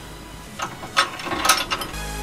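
A few sharp metallic clicks and rattles as bolts are fitted into a steel tow hook mounting bracket, with the loudest clicks about a second in and again near the end.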